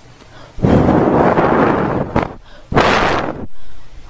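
A person blowing hard into the microphone twice, a long breathy blow and then a shorter one: the wolf's huff and puff against the wooden house, voiced by the narrator.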